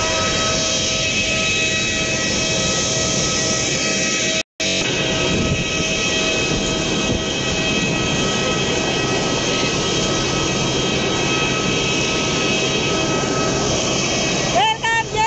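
Jet aircraft turbines running, a loud steady rush with several high, fixed whining tones over it. The sound cuts out completely for a moment about four and a half seconds in, then carries on unchanged.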